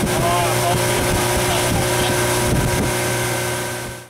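A boat motor running steadily under way, with wind on the microphone; it fades out at the end.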